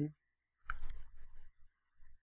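A short burst of typing on a computer keyboard: a quick cluster of key clicks starting a little over half a second in and dying away by about a second and a half.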